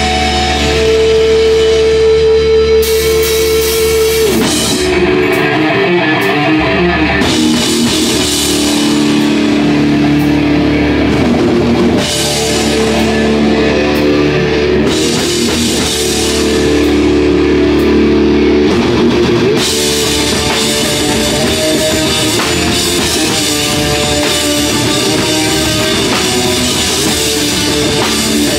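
Hardcore punk band playing live and loud: distorted electric guitar, bass guitar and drum kit, with the cymbals coming in and out as the riff changes every few seconds.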